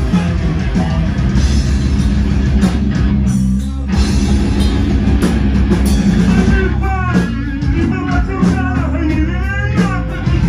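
Live rock band playing loud, with electric guitar and drum kit, heard from inside the crowd. The sound drops briefly a few seconds in, and vocals come in over the band in the second half.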